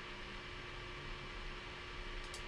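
Faint, steady hiss with a thin, constant hum: the background noise of a narration microphone, with no distinct sound event.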